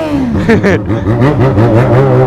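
Motorcycle engine revved in a series of quick blips, its pitch rising and falling several times a second over a steady running note.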